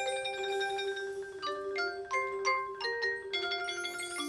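Marching band front ensemble's mallet percussion (marimba and other keyboard percussion) playing a soft passage. Held ringing notes are joined in the middle by a quick run of separately struck notes at changing pitches.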